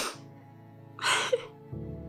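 Two short, sharp gasping breaths about a second apart, over steady low soundtrack music that swells louder near the end.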